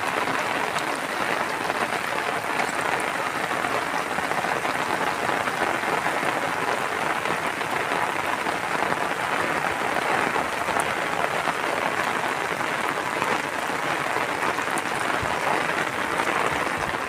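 Heavy rain falling steadily, an even wash of drops without a break.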